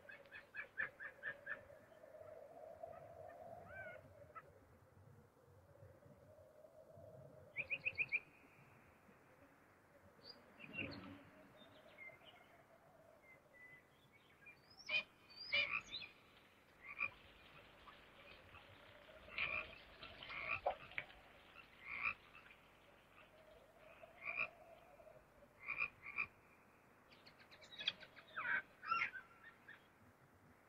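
Quiet night-forest ambience: frogs croaking and birds calling in short clusters of quick repeated notes, over a low tone that swells and fades every few seconds.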